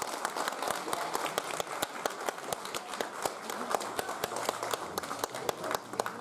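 Audience applauding: many separate hand claps in quick, irregular succession.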